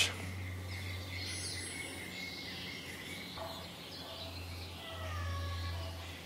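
Faint background ambience: a steady low hum with a distant bird giving a brief high trill about a second and a half in, and faint thin calls later.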